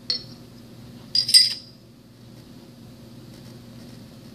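Metal parts of a single-spring mechanical seal clinking as they are handled and fitted onto the steel shaft sleeve: a short click at the start, then a louder ringing clink about a second in.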